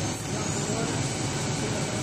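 Semi-automatic aluminium foil rewinding machine running with a steady mechanical hum and a faint high whine that rises slightly near the start, under background voices.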